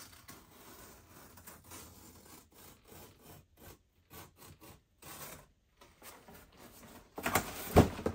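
A small knife slitting the packing tape on a cardboard box: uneven scratchy strokes with short pauses. Near the end comes a louder rustling burst as the box is pulled open.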